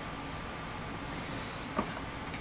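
Steady hiss and hum of a loud room air conditioner running, with a brief soft rustle about a second in and a short click near the end.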